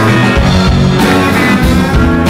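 Live band music, loud and continuous: an instrumental passage led by plucked string instruments over bass, with no singing.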